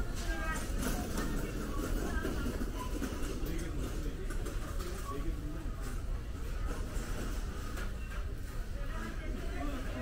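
Supermarket ambience: other shoppers' voices in the background and store music playing, over a steady low background.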